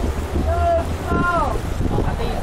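Low rumble of wind buffeting the microphone on a moving speedboat. Over it a person's voice gives two short drawn-out calls, the second falling in pitch.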